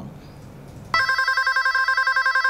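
Electronic telephone ringing: one ring that starts about a second in, a rapid warble between two pitches.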